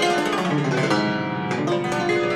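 Cimbalom played solo with hand-held hammers: a quick flurry of struck notes, the strings ringing on beneath them.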